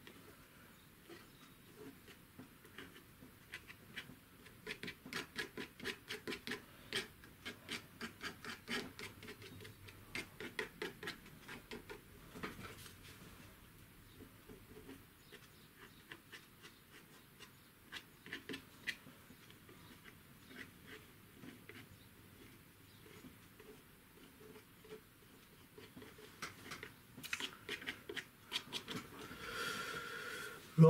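Quiet, short scratchy strokes of a small painting tool dabbing and rubbing oil paint onto primed paper, coming in quick runs of several strokes a second with pauses between.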